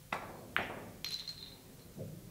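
A five-pins billiards shot. The cue tip strikes the ball with a sharp click, a second hard click of ball on ball or cushion follows about half a second later, and at around a second a quick cluster of clacks with a brief ring is heard as the pins are knocked down.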